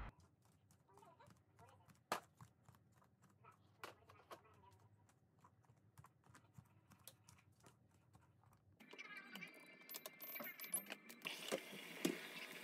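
Faint, irregular soft taps of bare feet walking on a laminate floor, a few steps louder than the rest. About nine seconds in, the background gets louder, with more clicks and a few thin steady tones.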